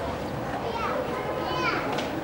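Outdoor street background with children's voices calling in the distance, two short high calls rising and falling in pitch.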